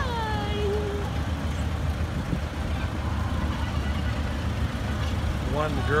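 Low, steady rumble of vehicles driving slowly past. At the start a voice calls out, its pitch sliding down over about a second.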